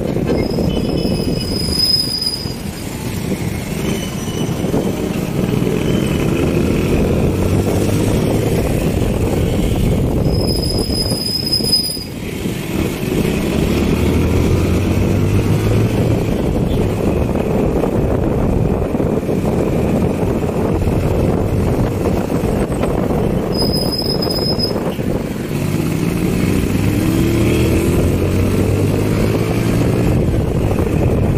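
Motorcycle engine and rushing wind while riding, the engine climbing in pitch three times as the bike speeds up. A brief high-pitched squeal sounds three times.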